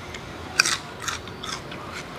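Fresh choy sum leaves torn by hand: three short crisp rips. The first, about half a second in, is the loudest.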